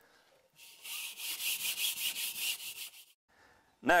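Abrasive scuff pad scrubbed back and forth on an RV kitchen wall panel in quick, rasping strokes that start about half a second in and stop about three seconds in: the surface is being scuffed so peel-and-stick tile will adhere.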